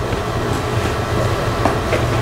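Steady room noise: a low hum and rumble under an even hiss, with no distinct events.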